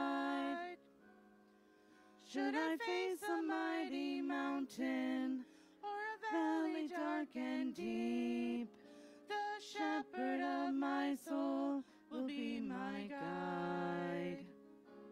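A hymn sung by a single voice over a quiet held accompaniment, in phrases with short pauses between them; the longest pause comes about a second in.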